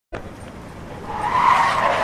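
A noisy sound with a squealing tone in it, swelling in loudness to its peak about one and a half seconds in.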